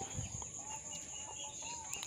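Faint outdoor ambience: a few short, soft bird calls over a steady high-pitched drone, with a brief low thump just after the start.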